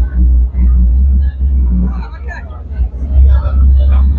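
Indistinct chatter of many people in a crowded hall, over a loud, steady low rumble.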